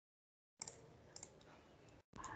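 Near silence on a video-call line, broken by a few faint clicks, about three, spaced roughly half a second apart.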